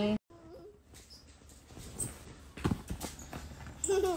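A toddler playing on a sofa: a short vocal sound, then a few soft knocks and thumps from his moving about, and another brief vocal sound near the end.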